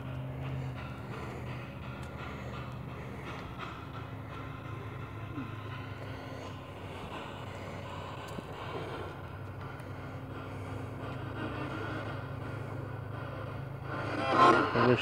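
A steady low mechanical hum with a faint hiss and scattered light crackle, holding at one level throughout.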